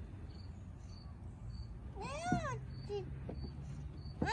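A cat meowing once, about two seconds in: a single call whose pitch rises and then falls, followed by a faint short mew about a second later.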